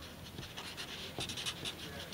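Sharpie marker writing on paper: a run of short, faint, irregular scratchy strokes as letters are drawn.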